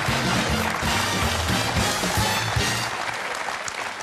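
Walk-on music playing over a studio audience applauding. The music stops about three seconds in and the clapping carries on, fading.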